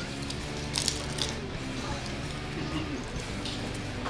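Snow crab leg shells cracking and crunching in the hands a few times about a second in, over quiet background music.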